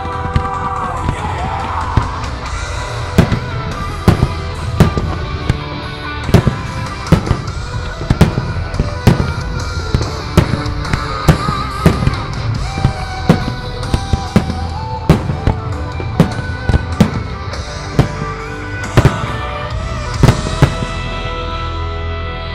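Aerial firework shells bursting in an irregular series of sharp bangs, roughly one or two every second, over continuous music.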